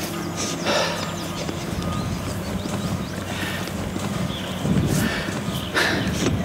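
Hurried footsteps and rustling through brush and dry grass, over a steady low engine hum.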